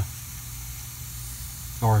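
Steady hiss of R-22 refrigerant escaping from a leak at the back of the solder joint on a heat pump's liquid-line filter drier.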